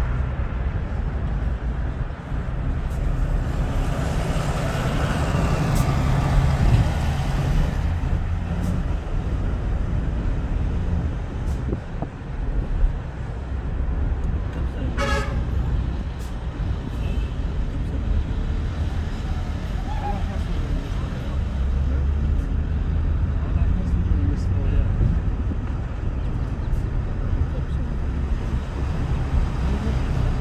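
Car road noise, a steady low rumble while driving. About halfway through, a vehicle horn gives one short toot.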